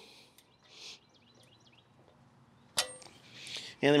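A single sharp metallic clink with a brief ring, about three quarters of the way through, from a steel washer and hairpin clip going onto a tractor's three-point hitch stabilizer pin.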